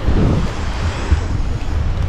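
Wind buffeting the microphone, an uneven low rumble, over a steady hiss of sea surf.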